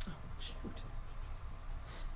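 Pens writing on paper and sheets being handled at a table, with two short scratchy strokes, one about half a second in and one near the end, over a low steady room hum.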